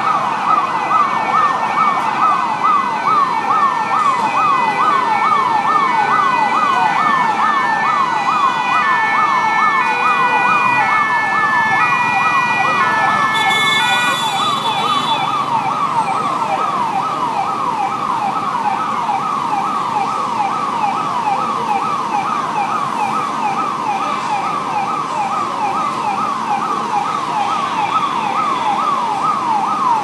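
Emergency-vehicle siren sounding in fast repeating sweeps, about three a second, without a break. Through the first half a second siren with stepped, higher tones sounds over it, and a brief hiss comes about halfway through.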